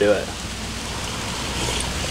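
Steady rain falling, a soft even hiss that swells slightly near the end.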